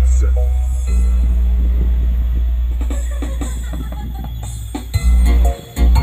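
Music played through a 2.1 speaker system whose ported subwoofer, built with double 8-inch drivers, carries very deep bass notes. One long bass note runs most of the way, then shorter bass hits come near the end.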